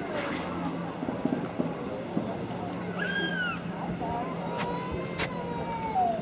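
Outdoor street ambience: a steady low hum like a vehicle engine running, under a murmur of distant voices. About three seconds in there is one short arched high call, and near the end two sharp clicks.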